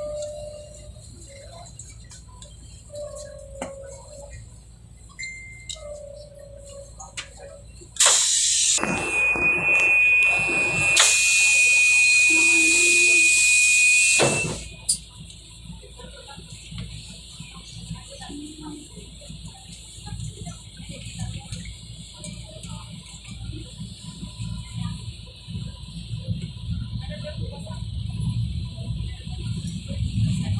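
Inside an LRT Line 1 light-rail train at a station: about eight seconds in, a loud hiss with a steady high-pitched beep over it lasts about six seconds and cuts off abruptly. Afterwards the train's low rumble builds toward the end as it gets moving.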